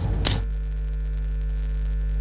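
Steady electrical mains hum: a low buzz with a few fainter steady tones above it, unchanging in level.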